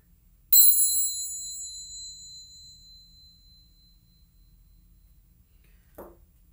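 A small high-pitched metal bell or chime struck once, ringing clear and fading away over about three seconds, sounded to clear the energy before a tarot reading.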